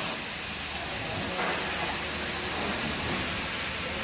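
Red-chilli flake cutting machine running, a steady even hiss with no distinct rhythm.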